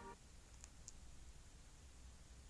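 Near silence: soft background music ends just after the start, leaving faint room tone with two faint clicks about a quarter second apart under a second in.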